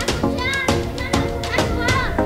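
Background music with frequent percussion hits over held chords.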